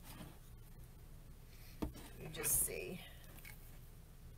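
A single sharp click about halfway through, then a brief whispered mutter from a woman.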